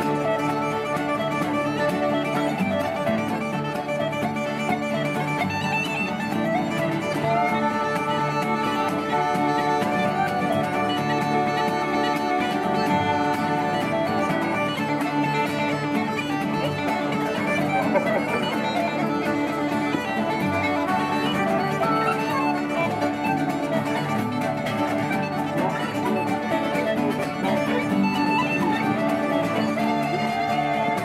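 Irish traditional dance tune played by a session group without a break, with wooden flutes and whistle carrying the melody in unison and guitars strumming the accompaniment.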